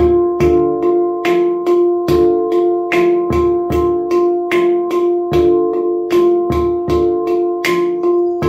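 Handpan played with both hands in a steady repeating groove of on-beat and off-beat strokes, about three a second. Each struck note rings on into the next, with a recurring low thump among the ringing tones.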